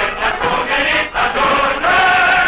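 Music: a choir singing held notes in chant-like phrases, with a short break about a second in.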